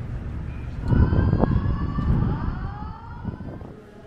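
A vehicle passing by. Its noise swells about a second in, and several whining tones glide slowly down in pitch as it moves away, fading by near the end.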